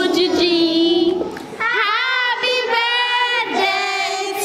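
A group of women singing together without accompaniment, in held notes, with a brief break about a second and a half in.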